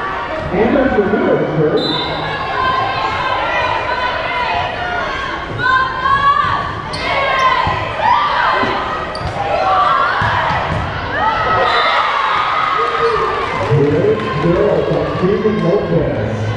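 Indoor volleyball rally in a large, echoing gym: players and spectators calling and shouting throughout, with a few sharp ball hits and court sounds.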